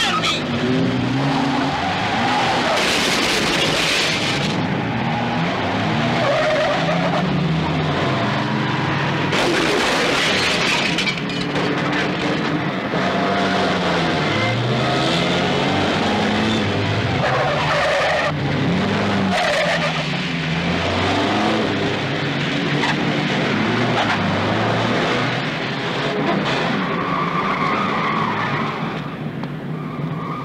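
Car engines repeatedly revving up and down, with tyres skidding; the loudest skids come around three and ten seconds in.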